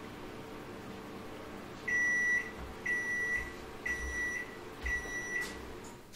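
Microwave oven running with a steady hum, then four short high beeps about a second apart signalling the end of its cooking cycle.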